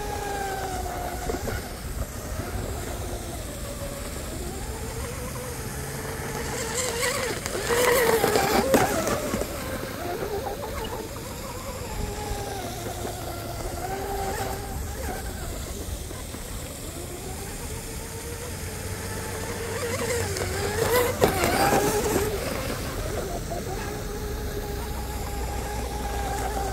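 Twin Leopard 4082 1600kv brushless motors of a 34-inch RC hydroplane whining at near full throttle, the pitch rising and falling as the boat laps the pond and turns. It is loudest twice as it passes close, about eight and twenty-one seconds in.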